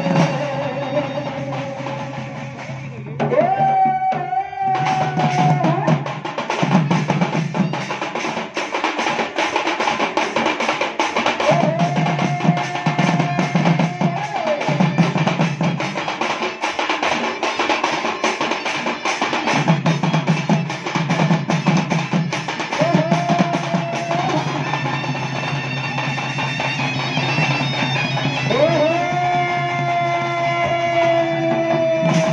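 Odia folk ensemble of a muhuri (double-reed pipe) and dhol drums: fast, dense drumming, with the muhuri sliding up into long held notes several times.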